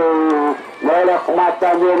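A male football commentator's voice: a long drawn-out call that slides down in pitch and ends about half a second in, then, after a brief pause, quick running commentary.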